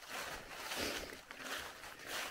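Footsteps scuffing and rustling through dry fallen leaves on a forest trail, soft and irregular.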